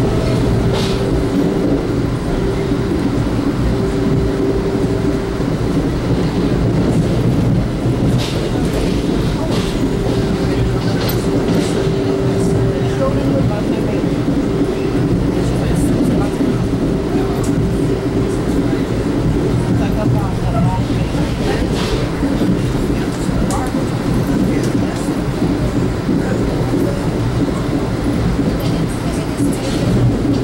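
Inside a 1982 Comet IIM passenger coach moving at speed: steady rumble of the wheels running on the rails, with scattered sharp clicks and a steady hum that comes and goes.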